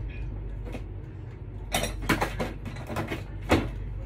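Items being handled and moved about on a shelf: a run of clatters and knocks starting just before the middle, the sharpest near the end, over a steady low hum.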